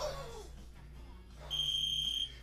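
A single steady, high electronic beep lasting under a second, starting about one and a half seconds in. At the very start there is a short sharp sound that falls in pitch.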